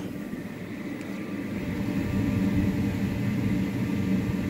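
Electric blower fan of an inflatable bounce house running with a steady hum, getting gradually louder.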